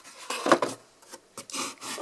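Cardboard box and fireworks packaging handled by hand: two rubbing scrapes of card against card, one about half a second in and a longer one in the second half.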